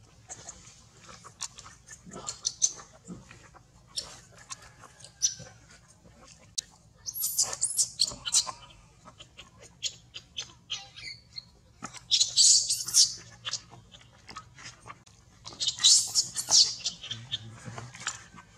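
Infant macaque crying in three shrill, very high-pitched bursts, about seven, twelve and sixteen seconds in, between scattered soft clicks and crackles.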